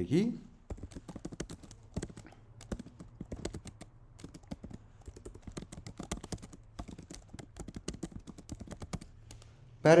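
Typing on a computer keyboard: an uneven run of key clicks with short pauses.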